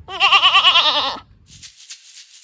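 A small goat bleating once: a single quavering call of about a second.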